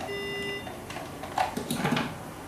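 A single half-second electronic beep from the anaesthesia equipment, then small clicks and a rustling clatter near the end as syringes and drug packets are handled beside a stainless kidney basin.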